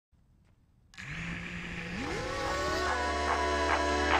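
Music starts about a second in: a steady tone that glides upward, then a steady bass and a regular beat of evenly spaced hits near the end.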